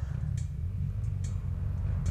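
Quad engines idling with a steady low rumble, with a couple of faint clicks.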